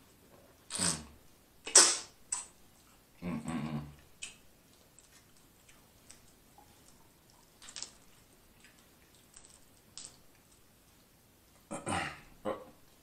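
Close-miked eating sounds: a few loud, wet slurps and smacks in the first two seconds as a sauce-coated shrimp is sucked off the fingers and bitten, then a short 'mm'. Next come faint scattered clicks as a shrimp's shell is peeled by hand.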